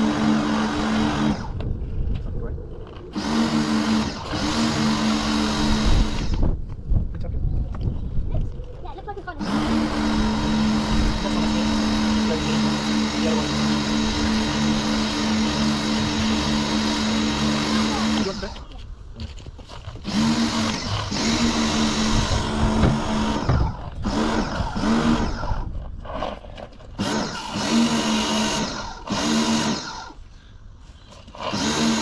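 Pressure washer running with a patio-cleaner attachment, spraying water onto paving slabs. The pump hums steadily over the hiss of the spray and cuts out and restarts as the trigger is let go and squeezed: off for a few seconds twice early on, then stopping and starting more often in the last third.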